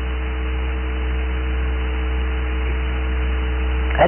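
Steady low electrical hum with a few fainter higher steady tones over an even hiss: the background noise of the sermon recording during a pause in the speech.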